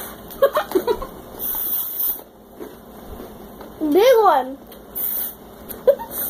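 A child's brief high vocal squeal that rises and falls in pitch, about four seconds in, after a few short murmured vocal sounds.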